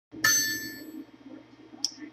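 A single bright bell-like ding, sounding once and ringing out over about a second, over a low steady hum, with a faint click near the end.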